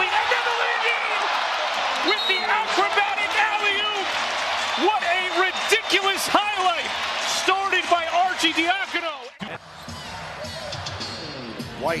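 Arena basketball game sound: rubber-soled sneakers squeaking on the hardwood court, the ball bouncing and the crowd's noise. About nine seconds in, the sound dips and returns with a thinner crowd and more scattered squeaks and bounces.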